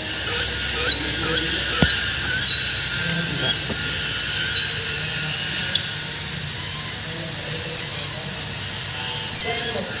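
A steady high hiss with a few short sharp clicks in the second half, as a cable lug is fitted into the die of a hydraulic crimper.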